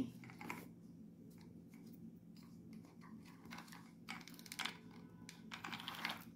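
Faint, scattered light clicks and rustles of handling, a few at a time, over a faint steady low hum in a quiet room.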